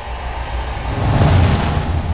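A deep rushing whoosh sound effect from an animated intro, swelling louder through the first second and then holding at full strength.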